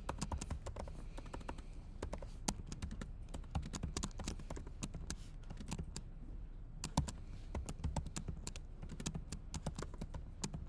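Typing on a laptop keyboard: an irregular run of key clicks with brief pauses, one sharper click about seven seconds in.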